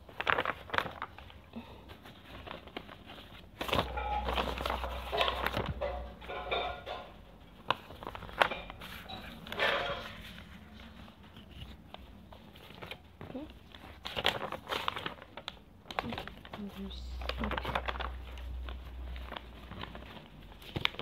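Sheets of paper rustling and crinkling as they are handled right against the phone's microphone, with scattered clicks and two stretches of low rumbling handling noise.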